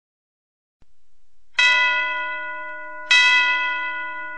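Two bell strikes about one and a half seconds apart, each ringing on and slowly fading, in the opening of a Christmas song recording. There is silence for nearly the first second.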